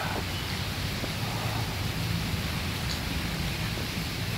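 Steady splashing hiss of thin water jets from the pool wall falling into a swimming pool, over a low steady hum.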